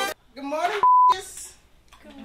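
A single censor bleep, one steady beep tone of about a third of a second, cutting into a man's line of speech to mask a swear word.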